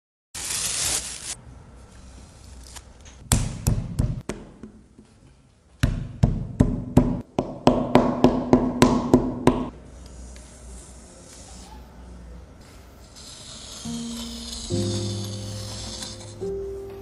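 A wooden paddle beating a slab of clay on a wooden table: a short run of about five sharp slaps, then about a dozen more at an even pace of roughly three a second. Near the end a scraping sound as a wooden compass scores a circle in the clay, with soft piano music coming in.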